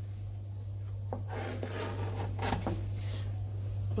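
Kitchen knife slicing crosswise through a halved leek on a chopping board: crisp cutting sounds with a few sharp knocks of the blade on the board, starting about a second in. A steady low hum runs underneath.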